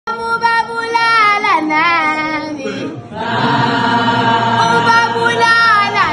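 A young girl singing unaccompanied in isiZulu, holding long notes with a wavering vibrato. There is a brief break about halfway through, after which the singing comes back fuller, with more voices.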